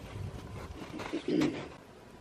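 A bird's short, low cooing call about a second in, with a few faint clicks around it.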